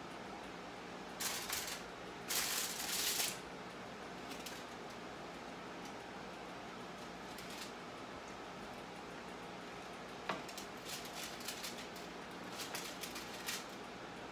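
Metal tongs working bacon-wrapped jalapeños loose from a foil-lined baking sheet, with the poppers stuck to the foil: two bursts of foil crinkling and scraping about a second in, then a run of light clicks and taps after about ten seconds, over a faint steady hum.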